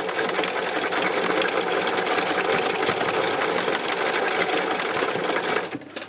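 Sewing machine running steadily while free-machine embroidery stitches go round the seedhead shapes, the fabric guided by hand; the machine stops just before the end.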